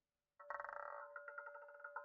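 Online roulette game's chiming sound effect: a rapid, fluttering run of bell-like tones that starts about half a second in.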